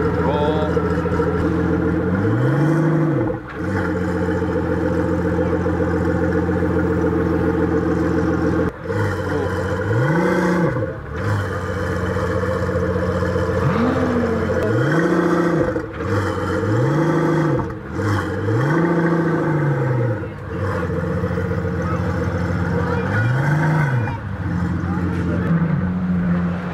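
Pagani Huayra BC's twin-turbo V12 idling, blipped about seven times, each rev rising and falling back to idle within about a second.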